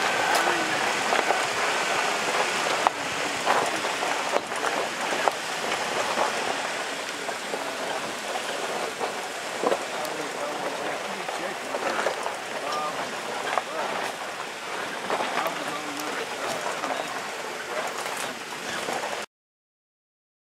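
A steady rush of outdoor noise with scattered crackles, and faint muffled voices under it. The sound cuts off suddenly near the end.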